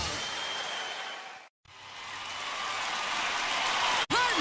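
A recorded rock song fading out to a moment of dead silence about a second and a half in. A wash of noise then swells steadily back up until the end, as the gap between two tracks of a music compilation passes.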